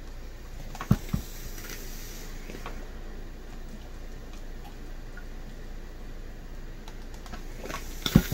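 A clothes iron set down with two knocks about a second in, then faint rustling and light taps of a cotton handkerchief being smoothed flat by hand on a towel, over a steady low hum.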